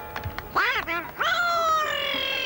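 Petrushka puppet's shrill, squeaky voice, made with a swazzle (pishchik) held in the puppeteer's mouth. A short rising-and-falling squawk comes about half a second in, then a long high call that slowly drops in pitch.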